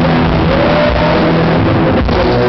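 Live rock band playing: a distorted electric guitar holds a note and bends it upward about half a second in, over bass and drums.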